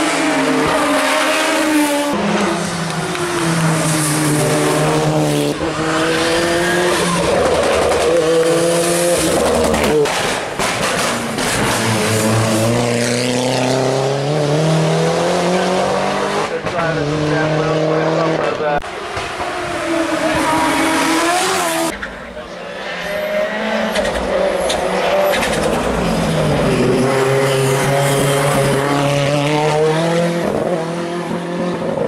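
Hillclimb race car engines, one car after another, revving hard through a hairpin. The engine pitch climbs as each car accelerates and drops as it lifts off, over and over.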